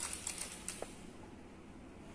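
A quick cluster of sharp clicks and small splashes in the first second as Benedict's reagent is poured from a plastic bottle into a glass measuring cylinder.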